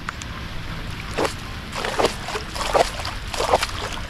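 A cast bait splashing into a muddy pond, among a few short, irregular bursts of sound.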